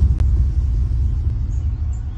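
Deep, loud low rumble of a trailer sound-design hit, slowly fading, with a brief click a fraction of a second in.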